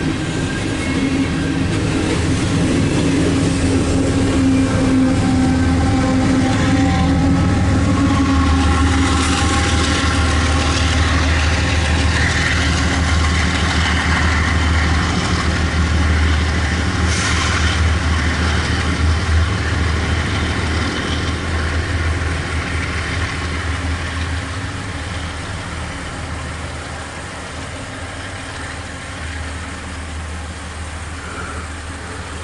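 Freight train rolling past close by, a continuous deep rumble of rail cars and diesel power that holds steady, then slowly fades over the last several seconds.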